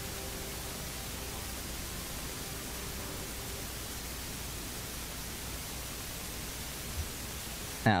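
Steady hiss of background noise on an open outdoor microphone, with no distinct event; a faint steady hum fades out in the first few seconds.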